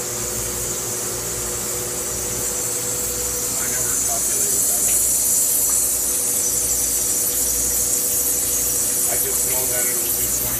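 Wire EDM machine cutting steel: a steady high-pitched hiss from the cutting head, where the wire sparks under a water flush, over a steady machine hum. The hiss grows louder about four seconds in.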